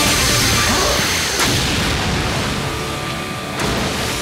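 Cartoon energy-blast sound effects: a sudden blast at the start, with further booming hits about a second and a half in and near the end, over loud action background music.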